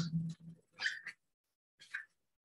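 A man clearing his throat, with two short, fainter throat or mouth noises following about one and two seconds in.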